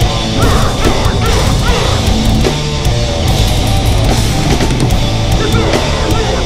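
Deathcore band playing live, heard from right beside the drum kit: fast drumming with dense cymbal crashes over heavy distorted guitar and bass, and harsh screamed vocals that rise and fall in pitch.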